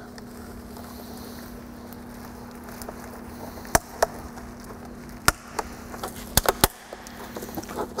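About six sharp plastic clicks and taps in the second half as a snap-on plastic cover is worked onto the housing of a flip-down DVD monitor, over a steady low hum.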